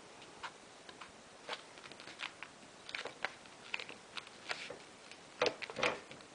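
A square of origami paper being folded by hand along the diagonal into a triangle: faint, scattered crinkles and taps of the paper under the fingers, with a louder cluster near the end as the fold is pressed flat.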